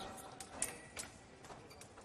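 Foil bout in action: about half a dozen faint, sharp taps and clicks from the fencers' footwork on the piste and their foil blades meeting. The loudest comes about half a second in.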